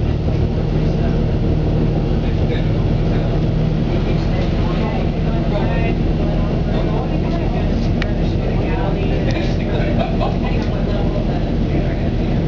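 Cabin sound of a 2007 Eldorado National EZ Rider II bus under way: its Cummins B Gas Plus engine runs with a steady low drone under road noise, with faint voices in the background.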